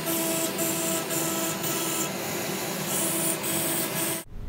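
A 2.2 kW water-cooled spindle running an end mill through MDF, cutting vacuum-table channels: a steady whine over the hiss of the cut, and the highest part of the hiss swells and drops as it cuts.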